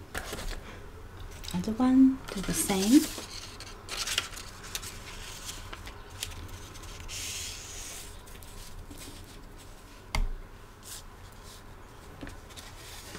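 Paper and card rustling and sliding on a desk as card mounts, envelopes and printed sheets are handled, with a brief murmured voice about two seconds in and a single knock near the end.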